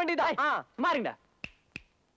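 A man speaking, then two sharp finger snaps about a third of a second apart in the second half.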